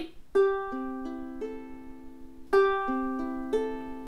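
Ukulele played fingerstyle: an ascending arpeggio, the four strings plucked one at a time from the fourth to the first and left ringing together, played twice.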